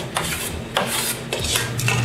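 Chef's knife chopping cooked turkey meat on a cutting board, three sharp strokes about half a second apart. A steady low hum comes in about one and a half seconds in.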